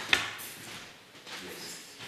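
Laptop keyboard being typed on: one sharp, loud key knock just after the start, then quieter scattered clicks and rustle as the hand moves off the keys.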